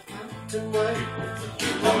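A vinyl record playing on a Dual 1241 belt-drive turntable: a song with strummed acoustic guitar, and a singer coming in near the end with the words 'keep on'.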